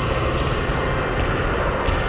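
A loud, steady low rumbling drone of horror-film sound design.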